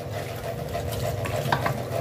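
Kitchen tap water running and splashing over an aluminium pot as it is rinsed and scrubbed by hand in a sink. Two light clicks sound about a second and a half in.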